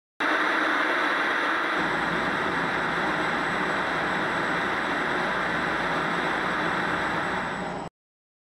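Television static hiss: a steady, even noise that starts just after the beginning, gains a low rumble about two seconds in, and cuts off suddenly just before the end.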